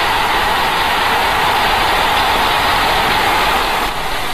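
Football crowd cheering a goal, a loud steady roar with no single voice standing out. It greets the equalising goal that has just been scored.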